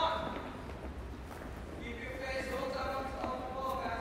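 Light, scattered taps of sneakers and soccer balls on a wooden gym floor as several children dribble, with a faint voice in the background from about halfway.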